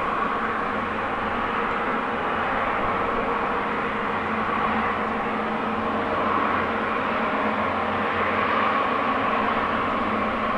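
Boeing 777 freighter's twin GE90 turbofan engines running steadily, a constant hum with a whine on top, as the jet taxis slowly onto the runway.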